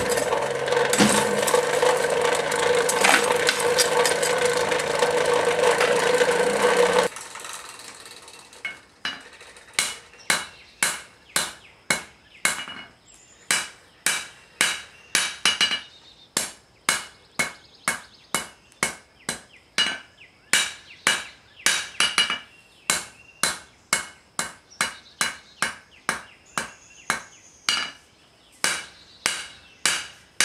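A coal forge's fire under air blast, a steady rushing noise with a hum, cuts off abruptly about seven seconds in. Then a hand hammer forges red-hot steel on an anvil, about two blows a second, each with a short metallic ring.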